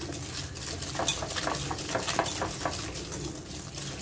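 Wire balloon whisk beating butter and sugar in a glass bowl by hand, a quick run of scraping, clinking strokes against the glass at about four a second. The strokes are creaming the mixture to a soft, pale paste for a butter cake batter.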